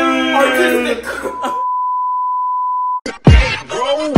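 A voice holding one long sung note breaks off, and a steady electronic beep at one pitch sounds for nearly two seconds. Near the end the beep cuts off and hip-hop music with heavy bass hits starts.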